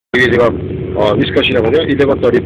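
A man talking, over the steady low rumble of the vehicle he is riding in, heard from inside the cabin.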